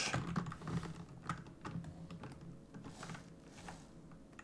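Computer keyboard keys clicking lightly at an irregular pace, a little more often in the first second or so.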